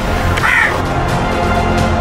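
A crow caws once, about half a second in, over steady film background music.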